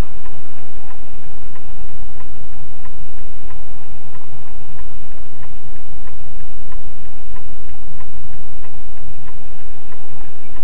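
A car's turn-signal indicator ticking steadily, about two and a half ticks a second, inside the cabin over loud, steady engine and road noise.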